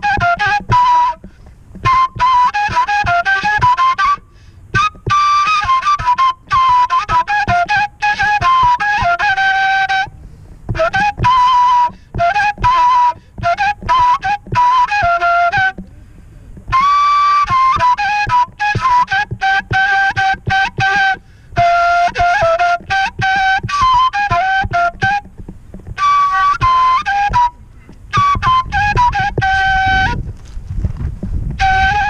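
Solo end-blown flute playing a folk melody in phrases of a few seconds, separated by short pauses, with quick ornamental turns and trills between the notes.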